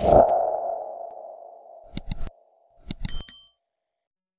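End-card animation sound effects: a mid-pitched tone that fades away over about two seconds, then two clicks about two seconds in. About three seconds in comes a cluster of clicks with a short, high ding, a subscribe-button click and notification-bell effect.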